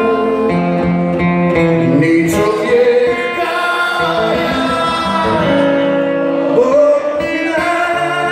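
Live band music: several men singing sustained notes in harmony, with guitar accompaniment, heard through the venue's PA.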